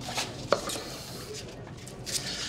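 Tableware knocking once, sharply, about half a second in, with faint handling noise before and after.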